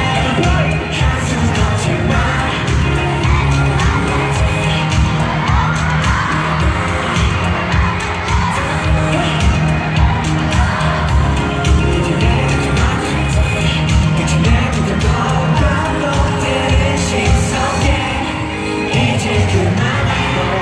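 Live K-pop music with singing and a strong bass beat, played over an arena sound system and recorded from among the audience, with the crowd cheering.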